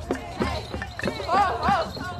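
Drums beaten in a quick, steady rhythm among a crowd, with voices rising and falling over them in the second second.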